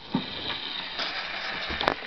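Surface noise of a 78 rpm shellac record on a gramophone as the needle runs in the lead-in groove: a steady hiss with crackle and a few sharp clicks, before the recording itself begins.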